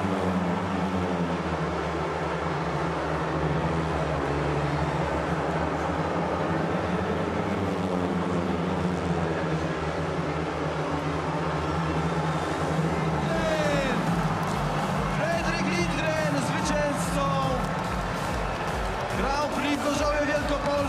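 Several 500cc single-cylinder speedway bikes running flat out on the final lap, a steady engine sound under the crowd. About 13 seconds in the engines give way to crowd shouting and music with a steady beat as the race ends.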